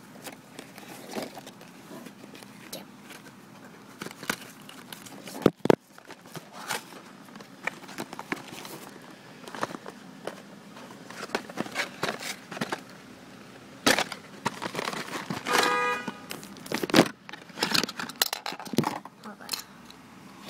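Cardboard toy box and plastic packaging being handled and opened: irregular clicks, rustling and crinkling, with a brief pitched squeak about three-quarters of the way through.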